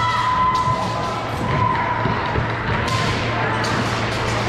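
Echoing gymnasium crowd chatter, with several sharp thuds on the hardwood floor from wushu competitors' stamping footwork. A long, high, held tone sounds through the first half.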